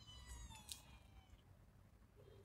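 A faint cat meow: one drawn-out call that falls slightly in pitch over about a second and a half.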